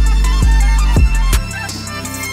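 Hip hop instrumental beat: deep 808-style bass and hard drum hits under a sampled string melody. The deep bass drops out about one and a half seconds in.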